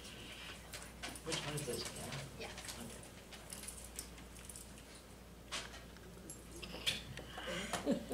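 Faint talk between two people, low and away from the microphone, with a few small clicks and rustles.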